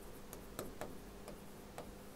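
Faint, irregular ticks and taps of a stylus on an interactive display's glass as a word is handwritten, about five clicks.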